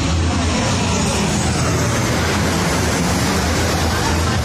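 Jet airliner flying low overhead: a loud, steady roar from its engines.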